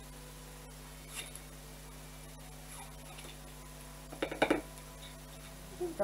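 Faint handling of ribbon and craft sticks: a few soft clicks and crinkles, with one brief louder crackle about four seconds in, over a steady low hum.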